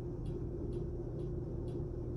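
Steady low background hum in a small room, with a few faint soft ticks.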